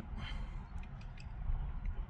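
A short pause between sentences with a steady low background rumble inside a car cabin and a few faint ticks.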